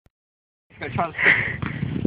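Speech: after a brief silence a young voice says "okay", with a breathy hiss behind it.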